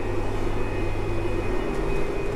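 John Deere tractor heard from inside its cab, the engine running in a steady drone with a faint, steady high-pitched tone over it.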